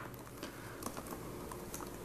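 Faint clicking of a computer keyboard: a few scattered keystrokes typed.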